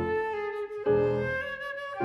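Flute and piano playing classical chamber music: a sustained flute line over piano chords, with a new piano chord struck a little under a second in.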